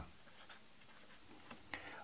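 Faint scratching of a pen writing numerals on paper.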